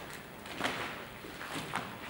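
Quiet ambience of a large, empty mill floor, with two faint steps on the debris-strewn floor, one about half a second in and one near the end.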